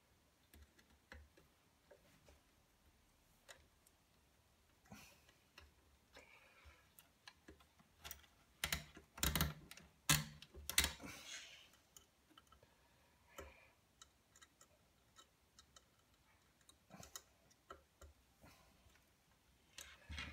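Faint, scattered small clicks and light metallic taps of hands and tools working on a shaft-extension coupler inside an amplifier chassis as its grub screws are tightened, with a louder run of knocks about nine to eleven seconds in.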